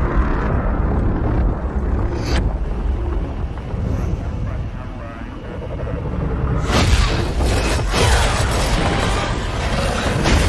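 Cinematic trailer soundtrack: dramatic music with deep booms and rumble. It eases off around the middle, then a loud hit comes about seven seconds in and another near the end.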